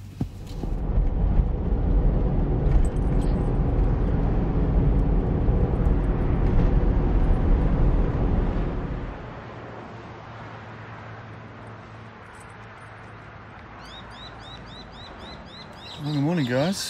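A vehicle under way: steady engine and road noise for about nine seconds, which then fades to a quieter outdoor background. Near the end a bird gives a quick run of short, repeated chirps.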